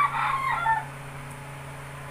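A rooster crowing, a high-pitched call that trails off and ends less than a second in.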